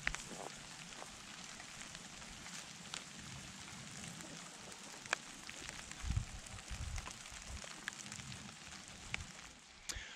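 Light rain falling outdoors: a soft, steady hiss dotted with scattered drop ticks. A few low rumbles come in about six seconds in.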